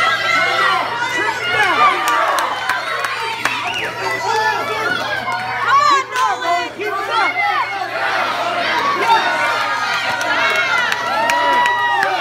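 Spectators, adults and children, shouting encouragement and cheering over one another at a youth wrestling match, with one long held shout near the end.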